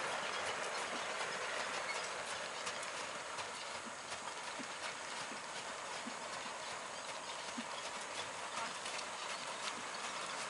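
A horse's hooves clip-clopping steadily on a gravel arena as it pulls a four-wheeled carriage, over a constant gritty rustle.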